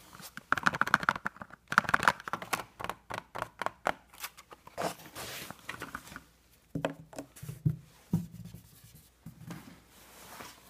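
Fingers tapping and scratching on hard objects close to the microphone. There is a rapid run of taps for the first few seconds, then scattered taps and a few low thuds.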